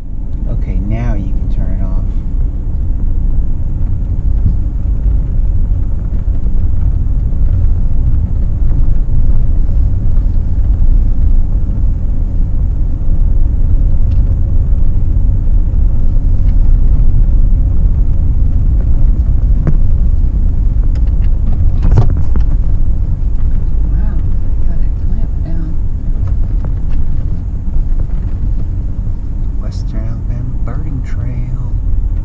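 Steady low rumble of engine and road noise from a truck driving at road speed, heard from inside the cab, with a single sharp knock partway through.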